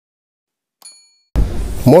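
A single short bright ding a little under a second in: the chime sound effect of an animated subscribe button. It rings briefly and fades, and then a steady background noise comes in with narration starting near the end.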